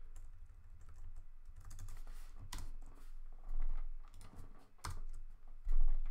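Typing on a computer keyboard: irregular key clicks and taps, with a louder dull thump near the end.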